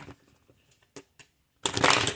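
A deck of tarot cards being shuffled by hand: a few faint clicks, then a quick, loud flutter of cards near the end.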